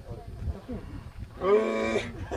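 A person's loud shout, one long yell held on a steady pitch for about half a second near the end, after some faint talk.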